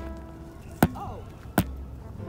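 Two sharp knocks, like chopping or hammering, about three quarters of a second apart, over soft background music.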